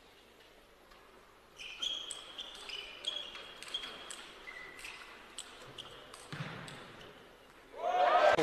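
Table tennis rally: the ball clicks sharply off the bats and the table at an irregular pace, with rubber shoe soles squeaking on the court floor. It starts about a second and a half in, and after the rally a short burst of crowd noise follows.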